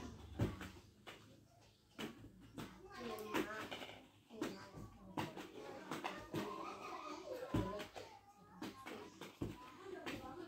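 A small child's voice talking and babbling in short bits, with several sharp clicks of hollow plastic balls knocking together in a ball pit.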